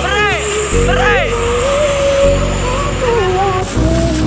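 Background music: a song with a wavering sung vocal line over steady bass chords that change about every second and a half, with two swooping rising-and-falling sounds in the first second or so.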